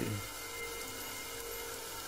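A pause in a recited poem: only a faint steady hum and hiss remain after the man's voice trails off right at the start.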